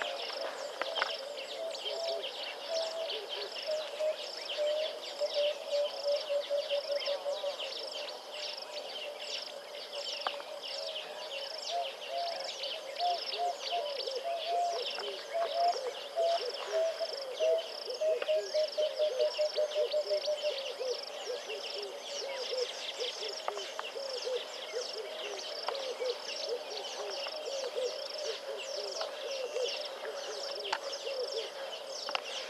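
Wild animal calls: runs of rapid, repeated low notes that rise and fall in bursts, over a high chirp repeating regularly throughout.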